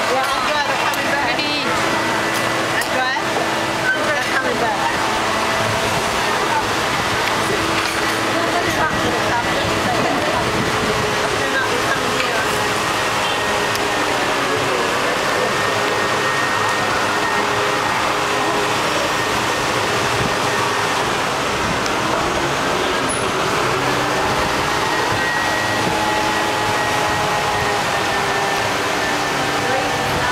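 Indistinct chatter of voices over the steady noise of street traffic.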